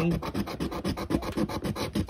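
Plastic scratcher tool scraping the silver coating off a paper scratch-off lottery ticket in rapid, even back-and-forth strokes.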